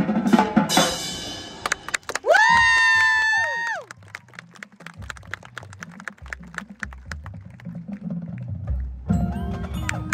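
Marching band and front ensemble playing. A loud full passage breaks off, then a single high note swoops up, holds for about a second and a half and drops away. Quiet, steady clicking percussion over low bass notes follows, and the band comes back in loudly with ringing mallet percussion near the end.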